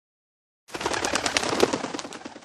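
A sudden burst of pigeon wings flapping fast, as when pigeons take off, starting under a second in as a quick run of sharp flaps.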